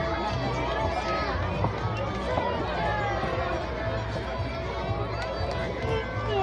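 A crowd of many voices chattering at once, with music playing underneath.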